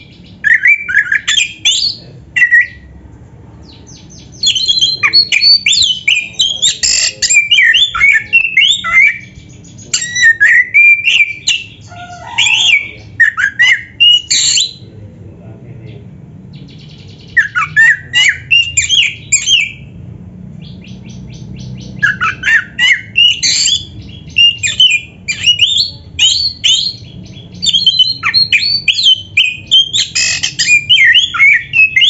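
Oriental magpie-robin (kacer) singing loudly in bursts of fast, varied whistles and chatters, its song packed with mimicked phrases, broken by a few short pauses.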